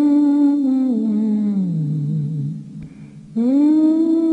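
A person humming a slow, wordless tune in long held notes. The pitch sinks through the first phrase, then after a short break a new phrase rises near the end.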